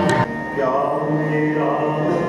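Sikh kirtan: harmoniums hold steady chords while a man sings a devotional line. The tabla strokes stop about a quarter second in.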